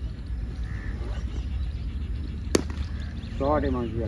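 A cricket bat striking the ball: one sharp crack about two and a half seconds in, over a steady low wind rumble on the microphone.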